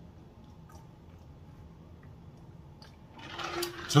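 Faint swallowing while drinking straight from a large plastic jug of juice, then a louder rising rush of liquid noise near the end as the drinking finishes.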